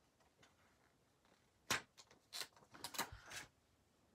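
Paper planner and stickers being handled: a quick run of short clicks and rustles starting a little under two seconds in, the first one the loudest.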